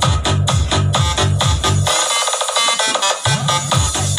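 Electronic dance music with a heavy pulsing bass beat, played loud through a Kevler GX7 amplifier and loudspeakers as a sound check. About two seconds in the bass drops out for just over a second while the upper parts play on, then the beat comes back in.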